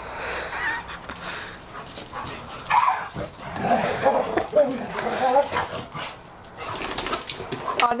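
Two dogs play-fighting, barking and giving wavering vocal calls in irregular bursts, loudest through the middle. A brief clatter comes near the end.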